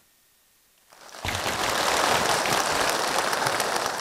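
A large crowd applauding. The steady clapping starts about a second in, after a moment of silence.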